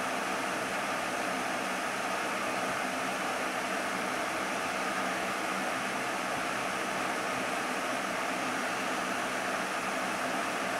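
Electric fan running: a steady, even rushing noise with a faint low hum under it.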